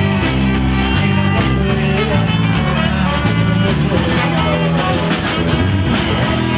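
Live band playing, guitars prominent over a steady beat.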